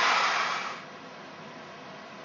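Hand-held immersion blender running in a pot of soup, blending it smooth; its noise cuts off under a second in, leaving only a faint hiss.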